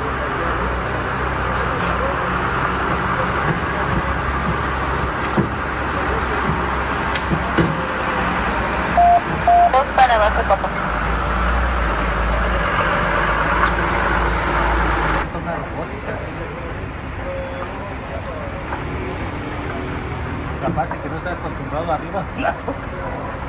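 A utility truck's engine runs steadily under the lineman as he works the hot stick, then cuts off suddenly about fifteen seconds in. Two short beeps sound near the middle.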